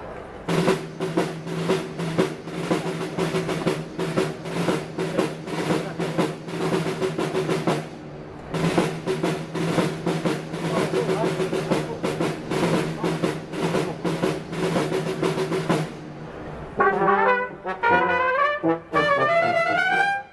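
Wind band playing a march. A repeated drum rhythm sounds over a held low brass chord, breaks off about eight seconds in and starts again. Near the end the brass take up a moving melody.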